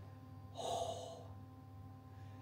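A man's single breathy sigh a little after half a second in, over the faint steady hum of a washing machine running.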